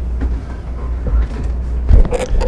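Steady low rumble of room noise picked up through the open microphone system, with a few faint knocks, then a sharp thump near the end as the podium microphone is handled.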